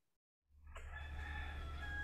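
Faint low steady hum with a faint high held tone and its overtones above it, lasting about a second and a half. It comes in about half a second in, after a brief total dropout of sound.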